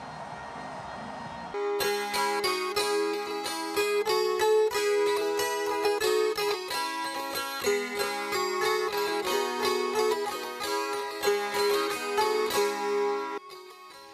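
Gusli (Russian psaltery) plucked by hand, playing a tune over ringing drone strings; it starts about a second and a half in and stops shortly before the end. Before it comes a short stretch of crowd noise.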